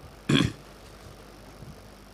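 Someone clearing their throat once, a short rough burst about a quarter second in, followed by faint steady background hiss.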